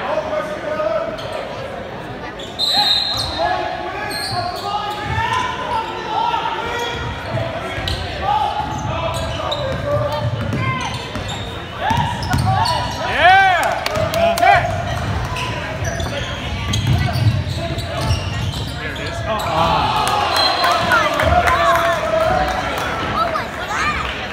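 Basketball bouncing on a hardwood gym floor during play, with sneakers squeaking on the court a little past halfway, in a large gym with voices around.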